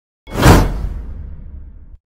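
A whoosh sound effect: a sudden rush that swells in about a quarter second in, peaks quickly, then trails off into a deep rumble that cuts off abruptly near the end.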